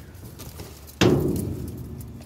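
A single sudden thump about a second in, dying away over the next second.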